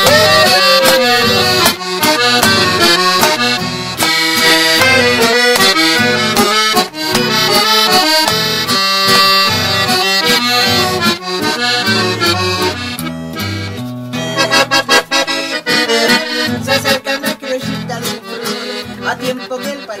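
Accordion playing the instrumental introduction of a ranchera in E minor over a steady, bouncing bass accompaniment. About two-thirds through, the accordion thins out and the strummed guitar accompaniment carries on more sparsely.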